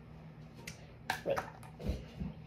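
A few short clicks and a low knock as a glass dropper is fitted back into a small serum bottle and the bottle is set down on a stone counter.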